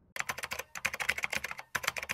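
Computer keyboard typing sound effect: rapid key clicks in three quick runs with brief pauses between them.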